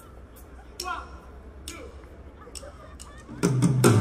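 Crowd chatter from a large concert audience between songs, with a few sharp clicks. About three and a half seconds in, a live rock band suddenly starts playing loudly, with drums and bass.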